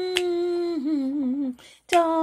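A woman's unaccompanied voice, singing or humming, holds a long steady note. About three-quarters of a second in it drops to a lower note with a wavering vibrato. It breaks off for a quick breath near the end, just before the next sung line begins.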